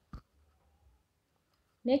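A single short, sharp click just after the start, followed by faint low noise; a woman's voice begins speaking near the end.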